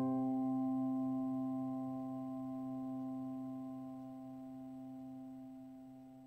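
The final piano chord of the background music ringing on and slowly fading away, a few steady notes held together.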